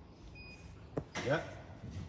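A single short, high beep from a lighting control panel's touchscreen as a key is pressed, followed about half a second later by a sharp click.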